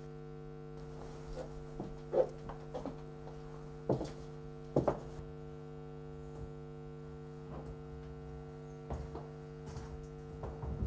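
Steady electrical mains hum with a few brief knocks, the loudest about two, four and five seconds in.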